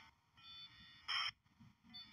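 Open radio channel between transmissions: faint hiss with steady high whine tones, and a short burst of radio noise about a second in.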